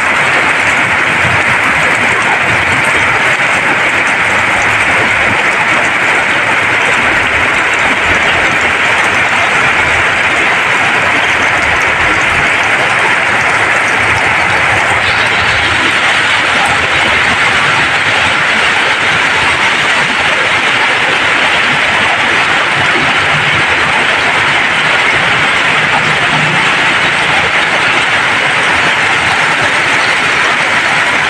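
Heavy tropical downpour: a loud, steady hiss of rain, with cars and motorbikes splashing through flood water on the street. About halfway through, the hiss turns brighter.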